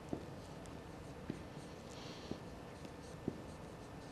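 Marker pen writing on a whiteboard: faint scratchy strokes, with a few light clicks.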